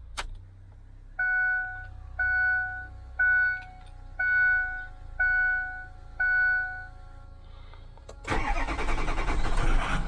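A click, then six dashboard warning chimes about a second apart. About eight seconds in, the pickup truck's engine cranks and starts, running loudly after the start.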